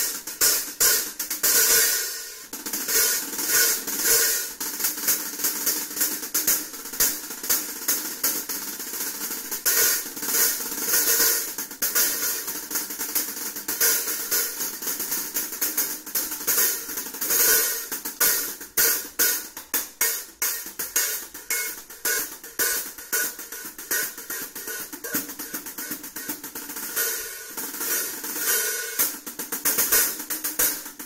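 A 13-inch Impression Illuminati hi-hat played with wooden drumsticks in a fast, steady groove, with dense rapid strokes and bright, sizzling cymbal tone.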